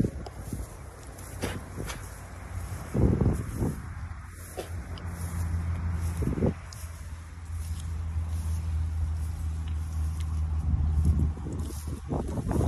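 A steady low droning hum that grows louder through the second half, with a few short thumps of footsteps and phone handling.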